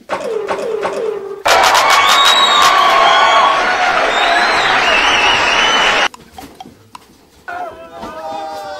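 A loud crowd of voices cheering and shrieking, starting suddenly about a second and a half in and cutting off abruptly about six seconds in. It comes after three short falling vocal tones.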